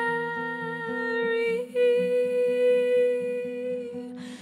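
A woman's voice holding a long note over a strummed acoustic guitar. About one and a half seconds in, the note breaks briefly and she holds a second, slightly higher note.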